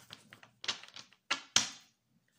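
Tarot cards being shuffled by hand: light quick card clicks, then two short louder riffling bursts about half a second apart, the second, near one and a half seconds in, the loudest, after which it stops.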